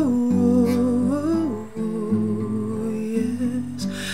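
A man's voice singing a wordless melody of long held notes that slide between pitches, with a short break about a second and a half in before a lower sustained note. He sings over gently played acoustic guitar chords.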